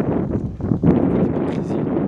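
Wind blowing across the microphone: a loud, uneven rushing noise, weighted to the low end, with a brief dip a little before one second.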